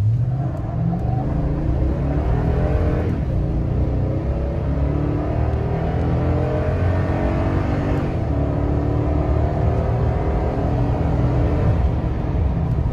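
Toyota Tundra 5.7-litre V8 accelerating hard from a standstill, heard inside the cab: the engine note climbs steadily in pitch as the automatic transmission shifts up through the gears, with shifts about three and eight seconds in.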